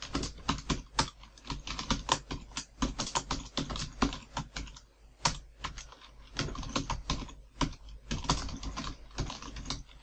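Typing on a computer keyboard: quick, uneven runs of key clicks with brief pauses between them.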